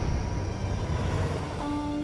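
Film-trailer soundtrack: a steady low rumble, with a single held musical note coming in near the end.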